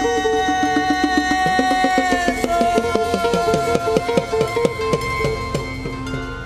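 Live band music without singing: a held chord that changes about two and a half seconds in, under a fast, even run of pitched drum strokes, some of them sliding down in pitch.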